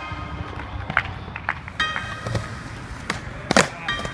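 Skateboard wheels rolling on concrete, with several sharp clacks of the board hitting the ground. The loudest clack comes near the end.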